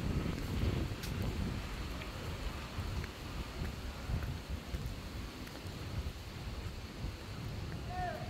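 Wind buffeting the microphone as a low, unsteady rumble, with a few faint ticks.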